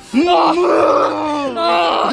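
A young person's voice holding one long, drawn-out vocal sound for about a second and a half at a steady pitch, dipping at the end, then a shorter vocal sound near the end.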